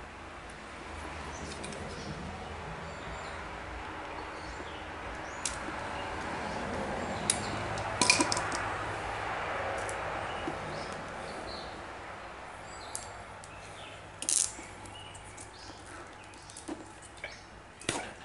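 Plastic coating being slid off the end of a wire rope by hand: a faint, drawn-out rubbing that builds for several seconds, peaks mid-way and then fades, with a few light clicks.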